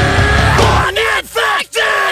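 Hardcore band playing live with shouted vocals; a little under a second in, the drums and bass stop, leaving a few short shouts.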